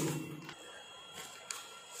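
Faint rustle and a couple of light ticks of a sheet of A4 paper being slid under a CNC engraving bit, used as a feeler to check that the bit just touches the surface.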